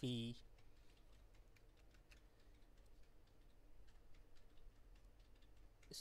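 Faint, irregular light taps and clicks of a stylus writing on a tablet, over a low steady hum.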